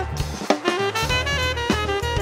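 Saxophone playing a jazz line over a drum kit with cymbal hits and a low, steady bass line, with a sharp drum hit about half a second in.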